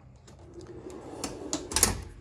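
A pull-out pantry cabinet sliding shut on its runners: a faint rolling rumble, then a few clicks and a knock as it closes near the end.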